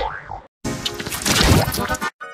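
Heavily effects-processed logo music with cartoon-style sound effects: a short sound cuts off about half a second in, then after a brief gap a loud, dense, layered stretch of distorted music follows.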